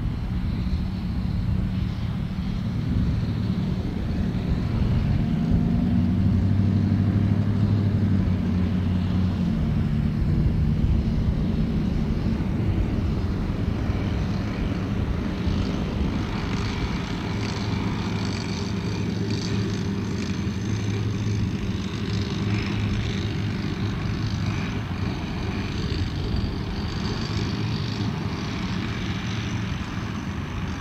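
Steady mechanical motor hum with propeller-like tones, its pitch gliding up and back down about five to nine seconds in.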